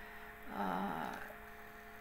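Steady electrical hum made of a few constant low tones, with a short vocal sound from the speaker, under a second long, about half a second in.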